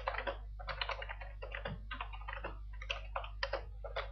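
Typing on a computer keyboard: a fast, uneven run of key clicks, over a steady low hum.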